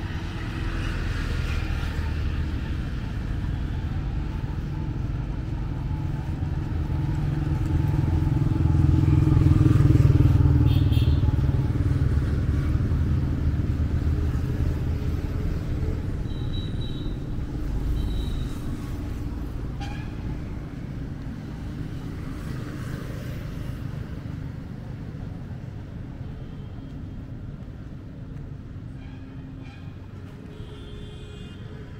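Road traffic running along a highway: engine rumble and tyre noise from passing vehicles, motorcycles among them. One vehicle passes loudest about ten seconds in, then the traffic sound gradually fades.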